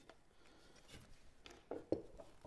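Faint clicks and rubbing of a metal roller chain handled and fed by hand around a sprocket, with a sharper click shortly before the end.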